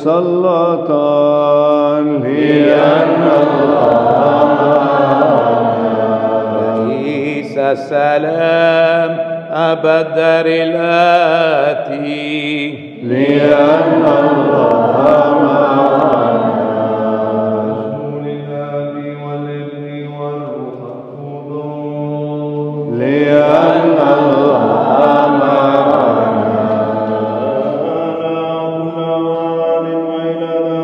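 Byzantine-rite liturgical chant: voices sing a melody in long phrases over a steady low drone held throughout.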